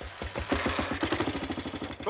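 Motorcycle engine starting up and running with a fast, even beat of firing strokes.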